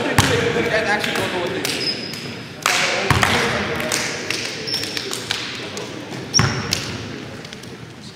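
Players' mixed voices in a gymnasium with a hard echo, broken by a few sharp knocks. Several brief, high sneaker squeaks come off the hardwood court floor.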